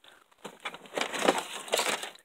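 Hands rummaging among boxed model-train items in a storage bin: a run of rustling, scraping and clattering that starts about half a second in.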